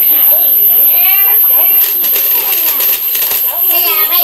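Voice sounds over a run of rapid plastic clattering from about two seconds in to about three and a half seconds in, as hands slap the keys of a children's electronic learning desk.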